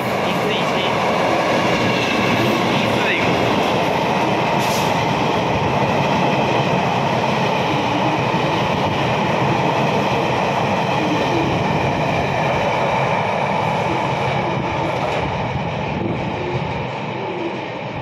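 The Mingri tourist train running through an underground station without stopping: a steady loud rumble of wheels on rails that eases slightly near the end as the last cars pass.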